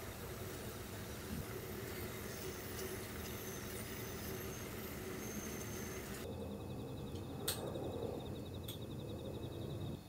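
Steady hiss of water steaming beneath a bamboo steamer of pumpkin. About six seconds in, the hiss suddenly thins to a lower rush. Two sharp light clicks follow as a bamboo skewer tests the pumpkin, over a faint rapid ticking.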